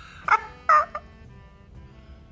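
A woman laughing: two short bursts of laughter in quick succession early on, then a quiet pause before she speaks again.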